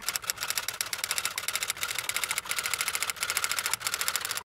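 Typing sound effect played as on-screen text appears letter by letter: a fast, even run of key clicks, several a second, broken by a couple of short pauses.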